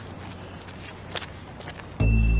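Footsteps of a man walking away, a few soft separate steps over faint outdoor background noise.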